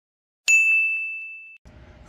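A single bright ding sound effect: one clear high bell-like tone struck about half a second in, ringing and fading for about a second before it cuts off abruptly. Faint room hum follows near the end.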